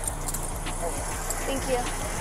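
Faint, indistinct voices of people talking outdoors over a steady low hum, with the rustle, light knocks and jangle of a body-worn camera and duty gear on a moving officer.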